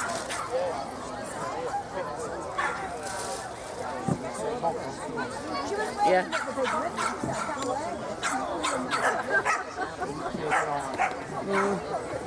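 Dogs barking at intervals among the voices of people chatting.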